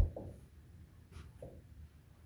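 Dry-erase marker writing on a whiteboard: a few faint, short strokes, after a soft knock at the very start.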